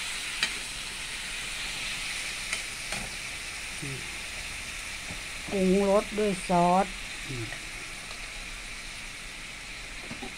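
Diced pork frying in a hot steel pan, a steady sizzle as it is stirred with a metal spatula, with a few sharp taps of the spatula against the pan in the first few seconds.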